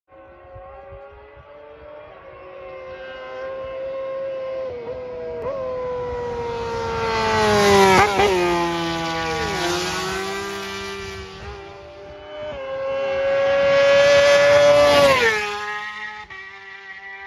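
Two racing motorcycles pass at speed one after the other. Each engine note grows louder as it approaches and drops sharply in pitch as it goes by, the first about eight seconds in and the second near the end.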